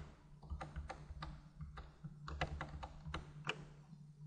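Faint taps of computer keyboard keys, a dozen or so at irregular spacing, stopping about half a second before the end.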